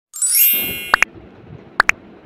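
A bright chime sound effect: a ringing ding with a rising sparkle that fades within about a second, followed by two pairs of quick short blips.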